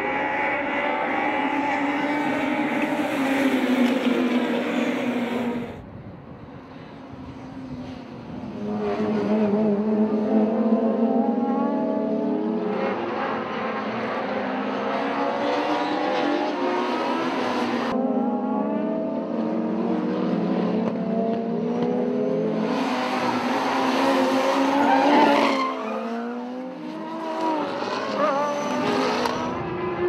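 Touring race car engines at high revs, several cars together. The pitch climbs through each gear and drops on the shifts and lifts, in short clips that change abruptly from one to the next.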